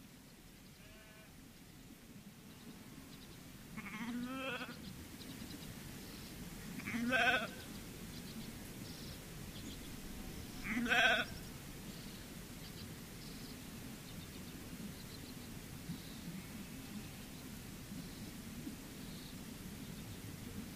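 Sheep bleating in a hill-farm field recording: three calls, about four, seven and eleven seconds in, the last two louder, over a quiet steady background.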